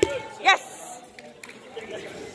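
A man's short shouted call about half a second in, followed by a brief soft hiss and then the low background noise of a large hall.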